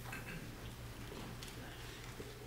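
Faint shuffling and scattered small clicks and creaks of a congregation sitting down in pews, over a steady low hum.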